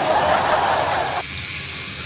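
Steady rushing hiss with no words, fuller for about the first second and then thinner and even: background noise of a phone-recorded clip.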